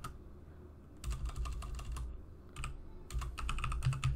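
Typing on a computer keyboard: quick runs of keystroke clicks starting about a second in, with a short pause just past the middle.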